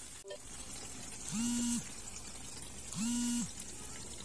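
A person's voice humming two short, level 'mm' notes, each about half a second long and about a second and a half apart.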